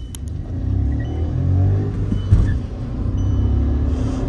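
Volkswagen 1.0 TSI three-cylinder turbo petrol engine accelerating hard from a drag-race launch, heard from inside the car, its pitch rising as it pulls. There is a brief thump a little over two seconds in.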